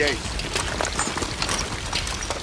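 Steady rain falling, with water pouring and trickling off rubble, over a low rumble.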